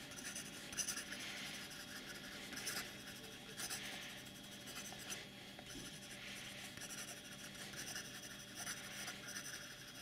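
Broad steel nib of a Diplomat Classic fountain pen writing fast on lined paper: a faint, continuous scratch of nib on paper that swells and dips with the strokes. The nib gives a touch of feedback but is not scratchy.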